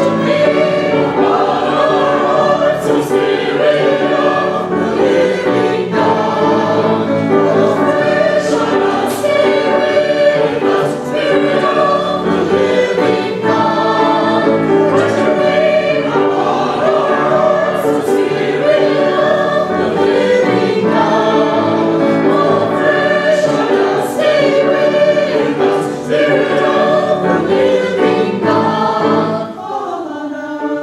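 Church choir of men and women singing together, continuously and fairly loudly.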